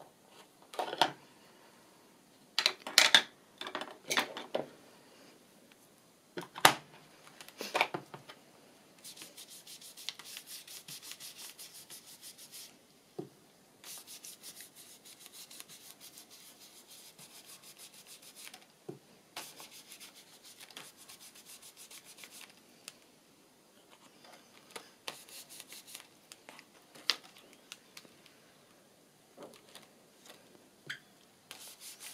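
An ink blending brush scrubbing Distress Oxide ink through a plastic stencil onto paper in fast, even strokes, in spells with short pauses from about nine seconds in. Before that, in the first eight seconds, come a few sharp taps and knocks, the loudest sounds here.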